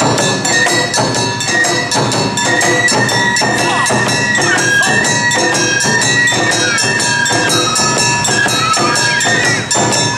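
Awa odori festival band (narimono) playing: a high melody with held notes that step in pitch, over a steady, evenly spaced beat of a small brass hand gong (kane) and barrel drums.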